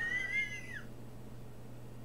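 A brief high-pitched whistle-like tone that sets in with a click, bends slightly up and then down, and dies away within the first second. After it there is only a low steady hum.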